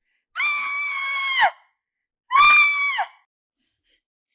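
A woman screaming twice: a long, shrill scream of just over a second, then a shorter one about a second later, each dropping in pitch as it breaks off.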